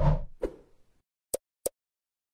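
Logo sting sound effect: a short swell that dies away within about a second, with a knock just before the half-second, then two short pops about a third of a second apart.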